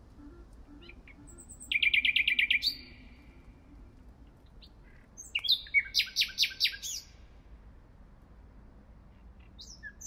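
Nightingale singing: two loud phrases of fast repeated notes, the first about two seconds in and the second about five seconds in, each with short sweeping notes around it.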